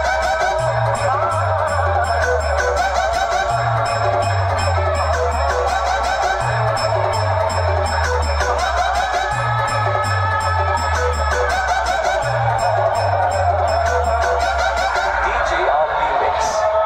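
Loud dance music blasting from a large DJ speaker wall, with a deep bass line stepping downward in a phrase that repeats about every three seconds under a dense midrange and steady high ticks.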